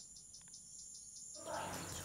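Faint insects chirping in a high, even trill with quick regular pulses. A soft background noise rises about a second and a half in.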